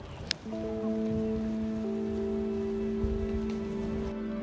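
Soft, slow background music with long held chords, fading in about half a second in over a faint steady hiss. A single sharp click comes just before the music starts.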